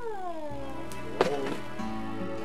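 A drawn-out whine sliding down in pitch over about a second, then a sharp thump a little past halfway. Soft background music notes come in near the end.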